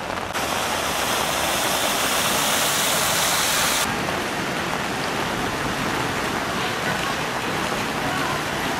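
Steady rushing hiss of heavy rain and running floodwater in a flooded street, becoming less hissy about four seconds in.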